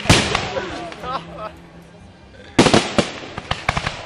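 Fireworks going off: a loud bang at the start and another about two and a half seconds in, each followed by crackling.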